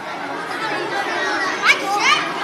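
Many children chattering and calling out at once, with a shrill rising shout near the end.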